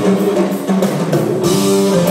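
Live rock band playing an instrumental: held guitar and keyboard notes over a drum kit, heard from the audience in a large arena.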